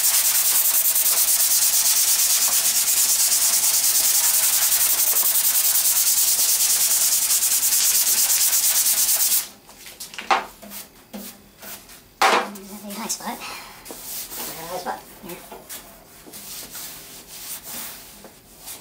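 Body filler being sanded by hand with a sanding block and 180-grit paper, a steady rasp that stops about nine seconds in. After that come scattered softer rubs and a single knock.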